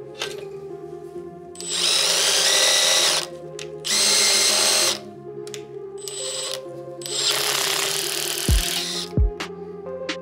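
Makita cordless drill driving a blind rivet adapter, running in three bursts at about two, four and seven seconds in while the adapter sets a blind rivet in an aluminium profile. Two dull thumps come near the end.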